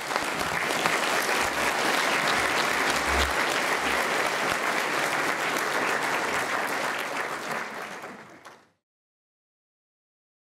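Large audience applauding at the end of a talk, a dense steady clapping that fades out near the end and then cuts to silence.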